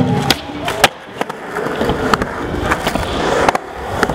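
Skateboard rolling on skatepark ramps, with several sharp clacks of the board popping and landing, the loudest just under a second in.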